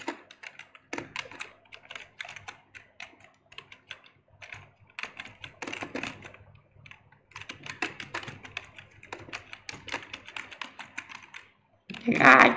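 Typing on a computer keyboard: irregular runs of quick key clicks with a few short pauses, one about midway and one just before the end.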